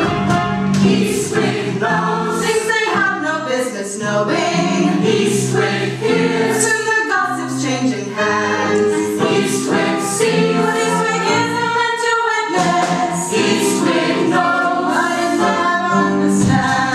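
Full cast of a stage musical singing a chorus number together, many voices on changing notes.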